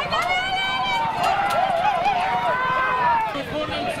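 Spectators shouting to urge on racehorses in a two-horse match race, with a sharp yell just after the start and a long, drawn-out call held for about two seconds.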